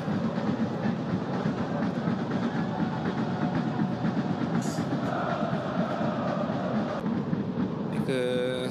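Football stadium crowd making a steady, dense din throughout, with a sustained chant standing out for a couple of seconds after about the halfway point.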